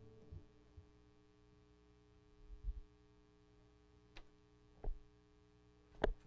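Faint steady electrical hum from a church sound system, with a few soft thumps and a couple of sharp knocks as an acoustic guitar is carried and set down on its stand; the loudest knock comes at the very end.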